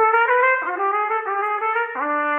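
Trumpet playing a short passage of sustained, connected notes that step down in pitch, the first lasting just over half a second and a lower one coming in near the end.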